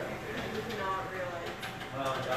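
Steady noise of a strong storm wind blowing, with faint voices in the background.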